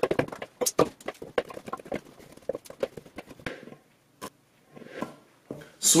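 Raw sweet potato chunks being swept off a cutting board and dropped into a big bowl: a quick, irregular run of knocks and thuds that thins out after about three and a half seconds, with a few last single knocks near the end.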